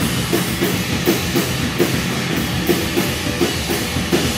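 Live rock band playing an instrumental passage: electric guitar over a drum kit keeping a steady beat.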